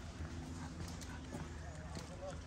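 Running footsteps on an asphalt lane as a jogger with a small dog passes close by, with faint voices in the background.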